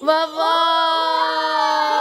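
A singing voice holding one long, steady note that begins abruptly, with a second melodic line moving beneath it.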